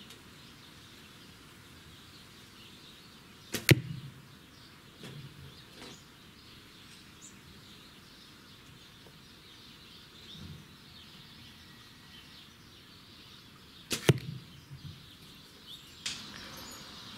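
Arrows from a traditional bow striking a foam block archery target: two sharp hits about ten seconds apart.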